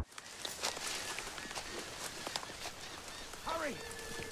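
People running through marsh reeds and wet ground: rustling, crackling and splashing footsteps. A man's voice cuts in near the end.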